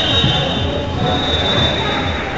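Indoor volleyball rally in a gym: players' movement and voices echo in the hall, with a high, thin squeal running through.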